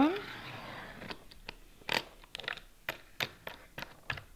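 A Rockler hold-down clamp's plastic knob being spun down on its threaded post to clamp a workpiece in a taper jig: a short scrape at the start, then light, irregular clicks and ticks, several a second.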